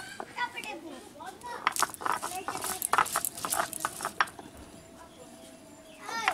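Stone roller knocking and grinding on a flat grinding stone (sil-batta), crushing onion, garlic and green chilli, in a quick irregular run of sharp knocks that thins out after about four seconds.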